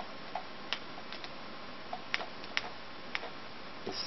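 Light clicks, about ten at uneven spacing, as text is entered letter by letter with an on-screen keyboard.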